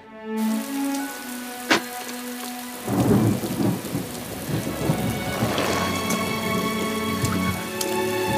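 Heavy rain falling, with a sharp crack of thunder and then a long rumble of thunder starting about three seconds in and fading out near the end, over soft background music.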